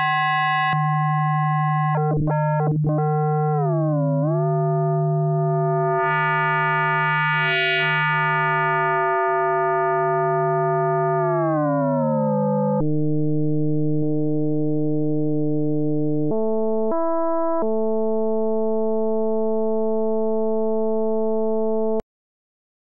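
Frequency-modulation synth tone from a Pure Data patch: one sustained electronic note whose overtones slide and jump as the harmonicity and modulation index are changed live. Its bright upper overtones sweep downward about four seconds in and again around twelve seconds, then the tone shifts character in steps. It cuts off suddenly just before the end.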